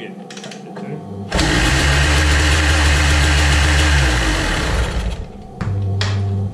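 1984 Kawasaki KDX 200's two-stroke single-cylinder engine fires on the first kick about a second in and runs loud and rattly for a few seconds. It dies away around five seconds in, then gives one more short loud burst near the end.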